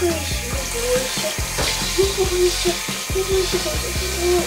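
Water spraying from a handheld shower head onto a wet cat in a bathtub, a steady hiss, with background music playing over it.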